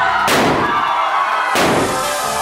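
Two confetti cannons going off about a second and a half apart, each a sharp bang with a short hiss, over background music.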